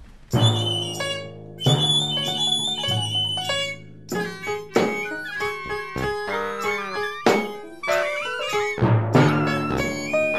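Symphony orchestra with strings playing: a loud full chord bursts in just after the start, and the music goes on with sharp accented chords every second or so.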